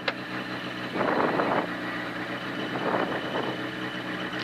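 Peugeot 106 rally car's four-cylinder engine idling steadily, heard from inside the cabin, with a couple of brief hissing noises over it.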